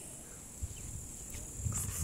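Steady high-pitched insect chirring in the background, with a few low bumps and rustles near the end.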